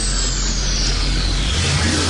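Electronic music build-up: a hissing white-noise sweep falling steadily in pitch over a deep, steady bass drone. The bass steps up in pitch about one and a half seconds in.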